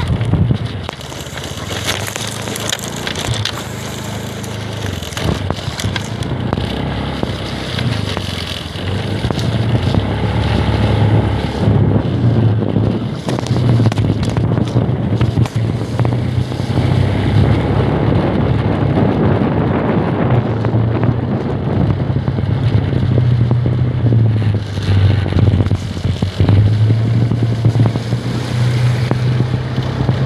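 Motorcycle engine running steadily while riding through shallow muddy floodwater, with water splashing and rushing around the wheels. The engine hum grows stronger and steadier about a third of the way in.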